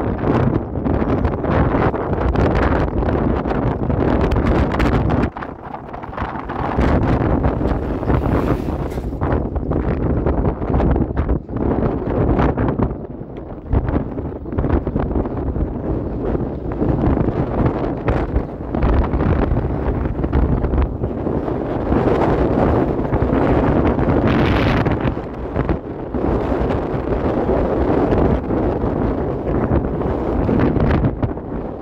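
Wind buffeting the microphone of a moving electric scooter, a loud, gusty rushing that eases briefly twice, over the low rumble of the ride on paving stones.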